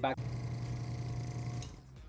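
Small airbrush compressor running with a steady buzzing hum, stopping near the end.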